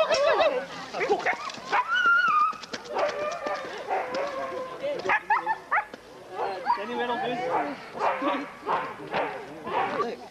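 Siberian husky sled dogs barking, yipping and whining in excitement at the start line of a rig race, with people talking among them.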